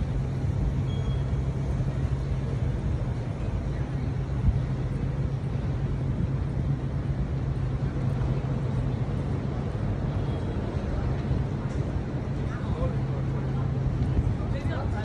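Urban street ambience: a steady low mechanical hum over a constant wash of distant traffic noise.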